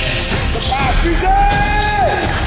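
Background music mixed with basketball practice sounds in a gym: a ball bouncing and sneakers squeaking on the court floor.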